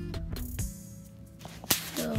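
Handling noise from a pop-up mesh butterfly habitat: a brief swish about half a second in, then one sharp snap near the end.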